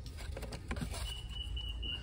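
Handling noise: a few short clicks and rustles in the first second as a cardboard-and-plastic gift box of glasses is picked up, over a low steady rumble. A faint steady high tone starts about halfway through.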